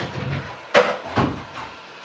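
Handling knocks on a wooden worktable: two sharp knocks, the first a little under a second in and the second about half a second later, with duller thumps around them.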